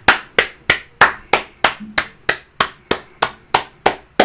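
A steady run of sharp, evenly spaced strikes, about three a second, each dying away quickly.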